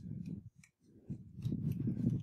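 Computer keyboard keys being pressed as text is deleted and typed: a few irregular clicks and dull knocks, with a short pause about half a second in.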